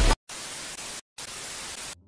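Television static hiss used as a transition effect, in two bursts of under a second each with a brief silence between them.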